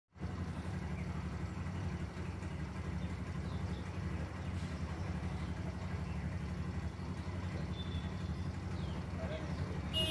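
A steady low mechanical rumble, like an engine running, with a fine rapid pulse and no change in pitch.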